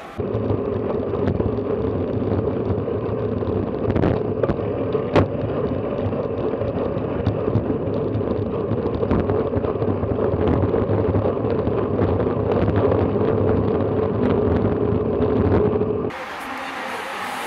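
Wind and road noise from a camera mounted on a racing bicycle at speed: a loud, steady rumble and rush, muffled, with a few sharp knocks and rattles from bumps, the sharpest about five seconds in.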